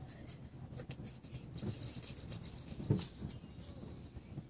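Faint bird chirps in the background, with a short low sound about three seconds in.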